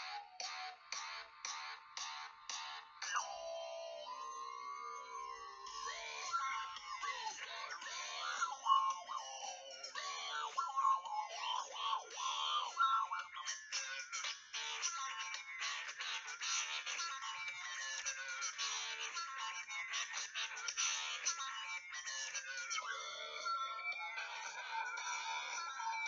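Electronic music from a phone's small speaker, thin and without bass, its tone shaped by the phone being played like a harmonica. A fast pulsing beat opens, held notes follow for a few seconds, then a denser, faster rhythm comes in about halfway through.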